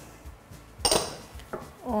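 A single short clink of glass about a second in, from a small glass dish knocking against a glass mixing bowl as an egg is tipped in.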